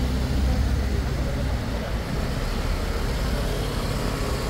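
City street traffic: a steady low rumble of passing cars.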